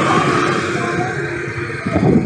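Steady rush of wind and road noise from a moving electric scooter in street traffic. The Yadea Ocean's motor itself is barely audible.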